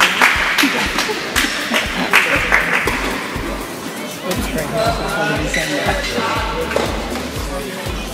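Sharp knocks of tennis balls being hit, with voices around the court; background music with a steady low beat comes in about halfway through.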